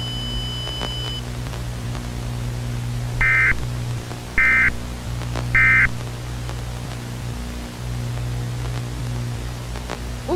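Three short bursts of EAS data tones about a second apart: the end-of-message code that closes an emergency alert broadcast. They sound over a low steady drone with static hiss, and a faint high tone stops about a second in.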